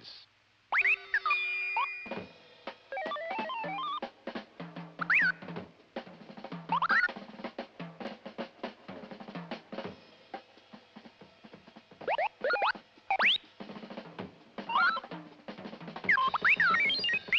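Robot sound effects in the style of R2-D2: chirps and quick rising whistles, several times, over music with drums and a run of short clicks.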